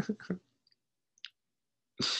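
A man's laugh trailing off, then near silence broken by one faint click about a second later.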